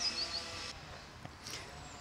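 A bird chirping three quick high notes in the first half second, over faint outdoor ambience that stays quiet apart from a soft click.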